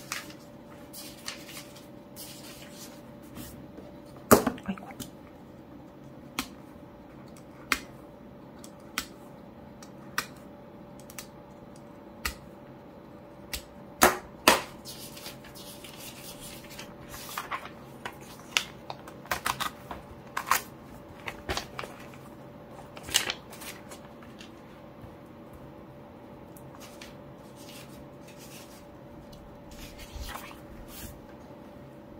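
Thin diary paper being handled as sewn pages are peeled apart from the binding: irregular crinkles, rustles and sharp paper snaps, the loudest about four seconds in and again around fourteen seconds.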